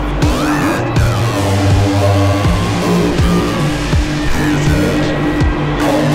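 Electronic music track with deep sustained bass notes, repeated drum hits and sliding high synth sweeps.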